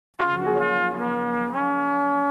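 Opening of a sample-based boom bap hip-hop instrumental: sustained horn chords start just after the beginning, step through a few quick chord changes, then settle on one held chord, with no drums yet.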